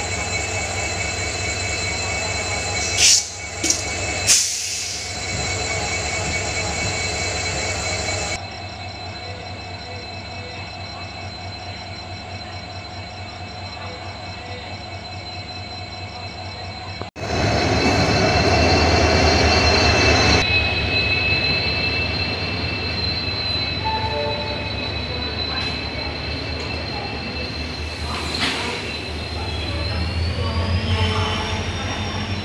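Passenger train at a station platform: coaches and wheels running with steady high-pitched squealing tones over a low rumble, and a few sharp clacks about three to four seconds in. The sound changes abruptly twice where the recording is cut, and near the end the squeal glides upward in pitch.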